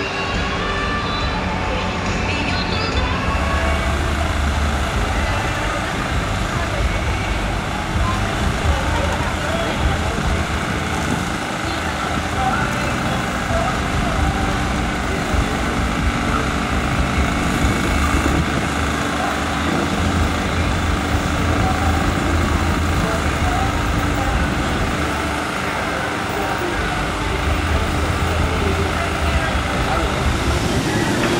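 Steady low rumble of heavy construction machinery engines running, with voices in the background.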